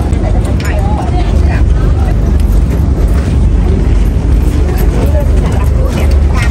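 A boat's engine running at idle, a loud, steady low drone, with people talking faintly.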